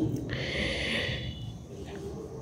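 A boy drawing one quick breath close to the microphone between spoken phrases, a short hiss lasting under a second.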